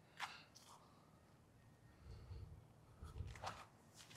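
Near silence, with a few faint scuffing footsteps on a paved path as a disc golfer steps into his throw, around two and three seconds in.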